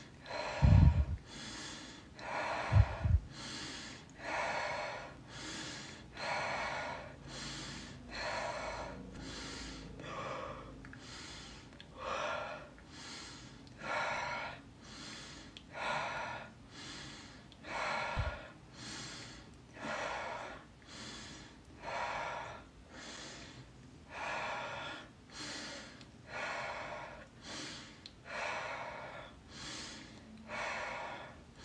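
A woman breathing quickly and forcefully through her nose and mouth in an even rhythm, about one breath a second, as a deliberate rapid-breathing exercise. A couple of dull low thumps sound in the first few seconds, and another about two-thirds of the way through.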